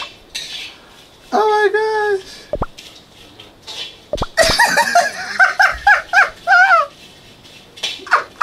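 A man's voice in short, high-pitched vocal bursts that are not words: one long drawn-out cry about a second in, then a quick run of about eight rising-and-falling cries between about four and seven seconds in.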